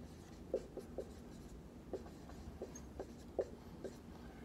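Marker writing on a whiteboard: a scattering of short, faint strokes as the letters are drawn.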